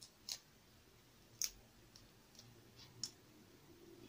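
Cooked shrimp shell being cracked and peeled apart by hand: three sharp clicks a second or so apart, with fainter crackles between.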